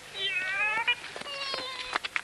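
Two drawn-out, high-pitched cries with wavering pitch, the first lasting most of a second and the second near the end, followed by a sharp click.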